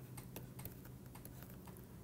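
Faint scattered clicks of a stylus tapping on a tablet screen during handwriting, over a faint steady low hum.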